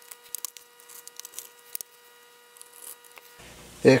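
Faint scattered clicks and taps from a laptop's plastic bottom access cover being pressed into place and fastened by hand.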